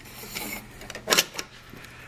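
Light clicks and scraping as a plastic locating ring is seated into the base of a chrome motorcycle passing-lamp housing, with the sharpest click a little over a second in and a smaller one just after.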